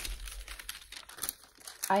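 Sheets of parchment paper rustling and crinkling, with faint scattered crackles, as they are smoothed down and lifted off the sticky surface of a diamond painting canvas.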